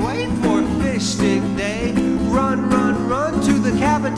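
Acoustic guitar strummed in a steady rhythm while a man sings into a microphone, a live solo song.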